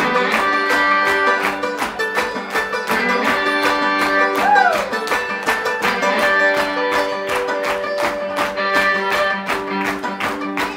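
Acoustic string band playing an instrumental passage: fiddle bowing held notes over plucked upright bass and guitar on a steady quick beat. About halfway through, one short note slides up and falls away.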